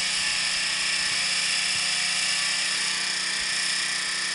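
Riding lawn mower engine running steadily with a high whine as the mower pulls up close by.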